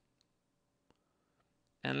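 Near silence with two faint clicks, then a man's voice starts near the end.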